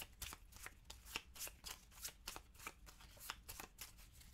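A small deck of board-game cards being shuffled by hand: a quiet, quick run of light card clicks and flicks.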